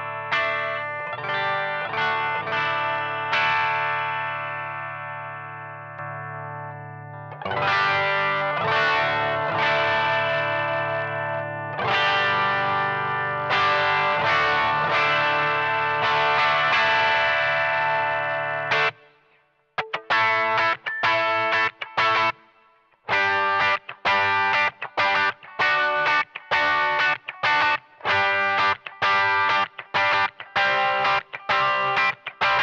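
Electric guitar played through a DSM Humboldt Simplifier DLX amp emulator in full stereo, with gain from its Box- and Marshall-type amp models. It plays held, ringing chords, then strummed chords for about the first nineteen seconds, stops suddenly, then plays short, clipped chord stabs in a quick rhythm.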